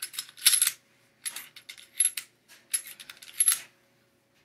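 Smith & Wesson M&P Shield pistol being worked in a function check after reassembly: about six sharp metallic clacks and clicks of the slide being racked and the action cycling, the second, about half a second in, the loudest.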